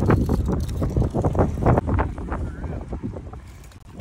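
Wind rumbling on the microphone over a BMX bike rolling across a concrete sidewalk, with a run of short clicks and knocks from the tyres and frame.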